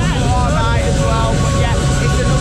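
Loud, steady fairground noise: a ride's machinery running with a deep continuous rumble, with voices calling over it.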